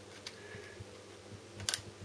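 Faint handling clicks as the small pressure tab is worked into the Harley Sportster's clutch lever clamp, with a sharp double click near the end as it seats in place.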